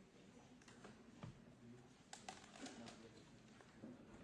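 Near silence: faint room tone with a few soft scattered clicks.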